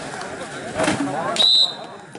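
A referee's whistle blown once, short and shrill, about one and a half seconds in, calling the end of a kabaddi raid after the tackle, over shouting voices from players and crowd.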